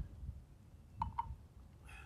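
Two quick light clinks about a second in, from a small metal can of PVC glue being opened and its dauber handled.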